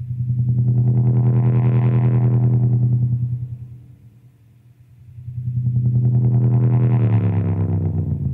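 Effects-laden electric guitar playing two slow volume swells, each chord fading in and fading out again over about three seconds. Near the end the second chord's pitch slides downward as it fades.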